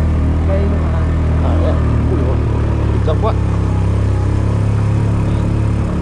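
Motorbike engine running steadily under the rider, a continuous low drone whose note shifts slightly about two seconds in.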